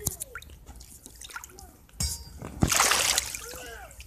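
Pool water splashing: a sudden splash about two seconds in, followed by a louder rush of splashing water lasting under a second, with a voice briefly near the end.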